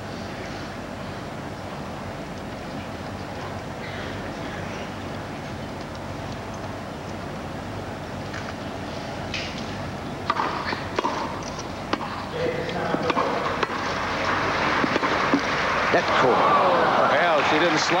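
Tennis match: a steady crowd murmur, then a serve and rally from about ten seconds in, heard as several sharp racket-on-ball strikes. Crowd noise swells near the end as the point finishes.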